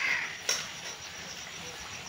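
A single short, harsh bird call right at the start, like a crow's caw, then a sharp click about half a second in, over a faint steady background.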